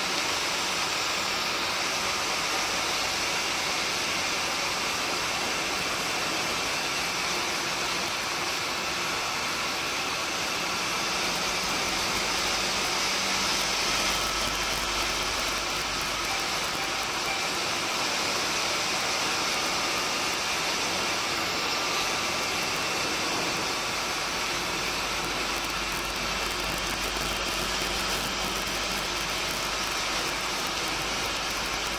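Steady wind rush and road noise of a motorcycle at about 80 km/h, heard through a helmet-mounted camera. Beneath it, the Honda ST1300 Pan European's V4 engine runs faintly.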